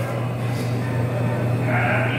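A steady low electrical hum, with a faint pitched sound near the end.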